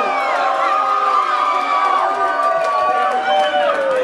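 Crowd of guests cheering, with long drawn-out whoops held for about three and a half seconds and slowly falling in pitch.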